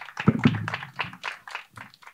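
Small audience applauding, the clapping thinning out and dying away near the end.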